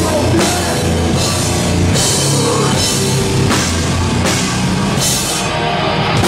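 A heavy rock band playing live and loud: distorted electric guitar and bass over a pounding drum kit, with cymbals crashing less than a second apart. The cymbals drop out briefly near the end.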